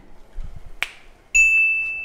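A single loud, bell-like ding with a sudden start, ringing high and fading over about a second, coming in a little past the middle. A sharp click comes just before it.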